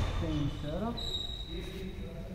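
Two men grappling on a padded gym mat, with a dull thud of a body on the mat at the start. A man's voice makes brief, unclear sounds, and a faint, steady high-pitched whine runs underneath.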